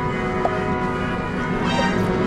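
Background music with bell-like chimes, sustained notes held steadily, with a brief bright chime near the end.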